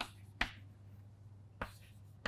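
Chalk tapping on a blackboard while writing: three short, sharp taps, the last near the end.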